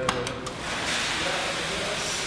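A car door latch clicks a few times as the door is opened, then a mass of loose popcorn pours out of the packed car with a steady rustling from about half a second in.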